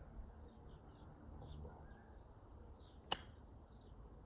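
A golf club strikes a golf ball once, a single sharp click about three seconds in, under steady bird chirping.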